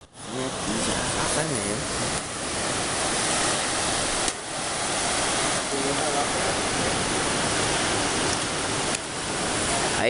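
Steady rushing noise of wind and sea surf at the shoreline. Faint voices talk under it in the first couple of seconds.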